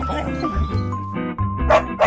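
Animated puppy yipping twice in quick succession near the end, over background music with steady held notes.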